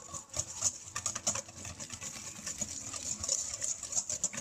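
Eggs and grated pecorino being beaten by hand in a stainless steel bowl: a quick, irregular run of utensil clicks and scrapes against the metal, several a second.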